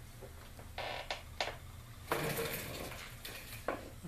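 Metal heat sink and chassis parts inside a ham radio transceiver being handled: a few light metallic clicks, then a longer scraping rustle in the second half and one more click near the end.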